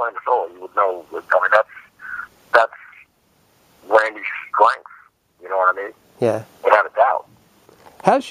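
A man's voice over a telephone line, in short phrases with brief pauses.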